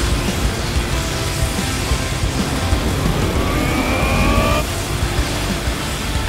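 Action-score music over fight sound effects with a low rumble, and a rising whine a little past halfway that cuts off suddenly.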